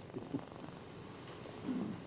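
A man's low, raspy chuckle, faint and broken, rising to a short voiced laugh near the end, over steady soundtrack hiss.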